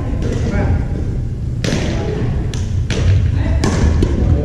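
Badminton rackets striking a shuttlecock during a rally: four sharp hits over the second half, echoing in a large gymnasium hall.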